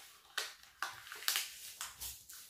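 Brown pattern paper being folded and pressed flat by hand, rustling in four short bursts about half a second apart.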